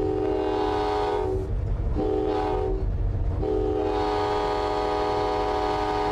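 Diesel locomotive air horn sounding three blasts, a chord of several notes held steady: a long one, a short one, then a longer one, over the low rumble of the moving train.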